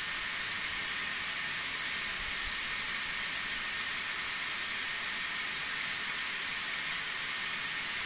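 Dyson Airwrap running at full heat and full speed, a steady rush of air with a thin high whine, heating a section of hair wrapped around its barrel.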